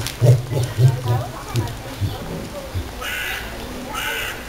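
Southern cassowary giving deep, pulsed calls during the first two seconds, followed by a brief higher call about three seconds in.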